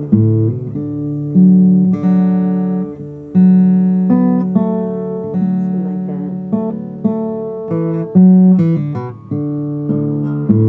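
Acoustic guitar in open D tuning playing the verse chord pattern of a song. Chords are struck and left to ring and fade, with a new stroke about every second.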